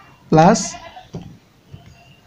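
A man's voice drawing out a single syllable, "a", followed by a couple of faint clicks of rubber keys being pressed on a Casio fx-991EX ClassWiz calculator.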